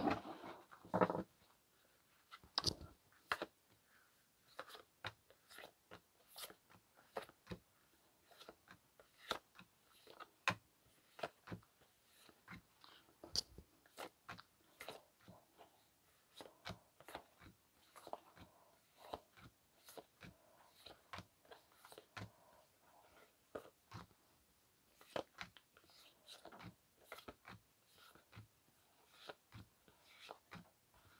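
Muse Tarot cards being shuffled by hand: faint, irregular clicks and soft snaps of card edges sliding and striking against each other.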